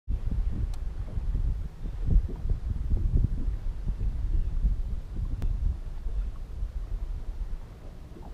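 Wind buffeting the microphone: an uneven, gusting low rumble, with two faint clicks, one near the start and one about halfway through.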